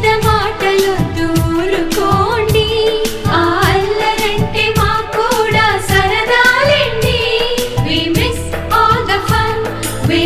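Indian film-style song in Telugu: a singing voice carrying a melody over a steady percussion beat.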